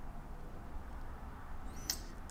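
Oak-trimmed wardrobe door being pushed shut, with quiet room noise and one short high squeak near the end.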